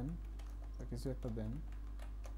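A few keystrokes on a computer keyboard, typing a short entry, over a steady low hum.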